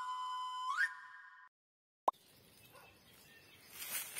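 Electronic intro jingle: a whistle-like tone that steps down, then sweeps up and fades out within the first second and a half. After a brief silence and a click, faint outdoor ambience rises toward the end.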